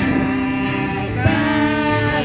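Live singing with acoustic guitar, voices holding long notes and moving to a new note about a second in.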